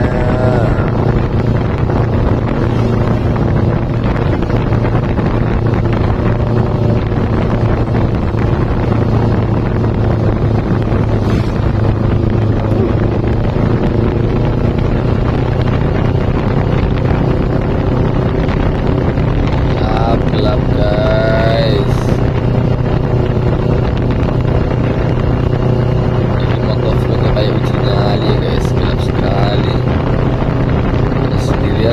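Kawasaki Ninja 250's carburetted parallel-twin engine running at a steady pace while riding, with wind rushing over the handlebar-mounted microphone.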